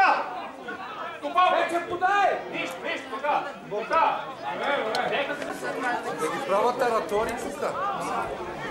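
Several people talking over one another in Bulgarian, close to the microphone: spectators' chatter in the stands.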